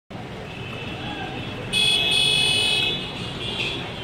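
Street traffic noise, with a vehicle horn sounding once for about a second near the middle, loud and steady in pitch.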